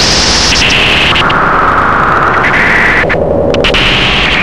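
Harsh analogue noise music: loud, dense noise with bright bands of hiss that jump to a new pitch every half second or so. The high end cuts out briefly a little after three seconds in, leaving a lower hum-like band.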